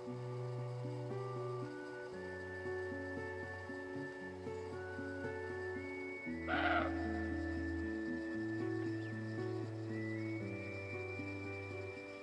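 Background music with steady held notes, broken once about halfway through by a single short, hoarse bark from a roe deer.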